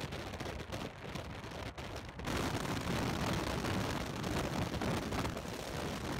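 Car driving, heard from inside the cabin: a steady rumble of tyre and wind noise. About two seconds in it becomes louder and rougher, as the car runs on a dirt road.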